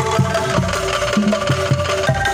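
Bamboo angklung ensemble playing a song: shaken angklung tubes and a struck bamboo xylophone sound pitched notes over a steady, even beat of low bamboo strikes.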